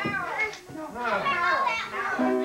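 Several voices talking over one another in a crowded room: lively party chatter with no clear words.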